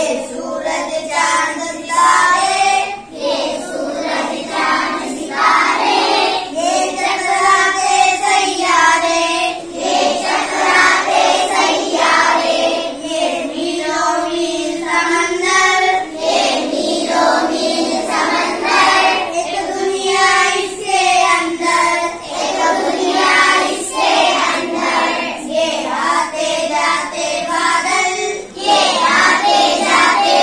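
Children singing an Urdu poem (nazm), line after line with short breaks between phrases.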